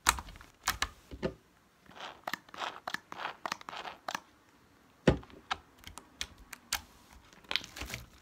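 Slime kneaded and stretched by hand, with irregular sharp pops and crackles as it pulls apart. The loudest pops come at the very start and about five seconds in.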